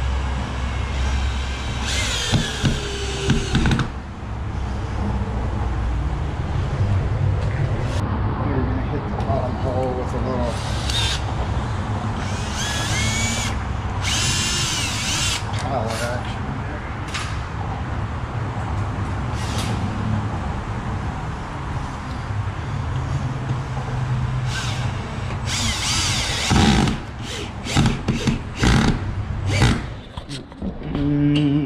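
Cordless drill working in a wooden door jamb at the strike plates, running in several spells, about two seconds in, from about ten to sixteen seconds, and again near the end, over a steady low hum. A few sharp knocks come near the end.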